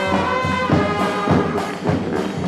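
High school New Orleans brass band playing a second-line tune, the horns holding long notes together.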